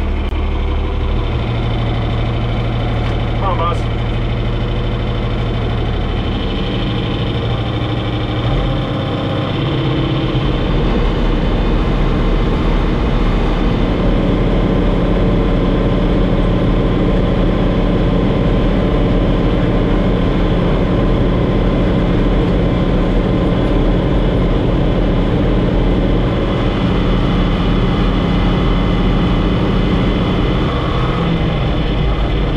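John Deere 4020 tractor engine running steadily while driving, heard from inside the cab. It dips briefly about nine seconds in, then runs a little louder.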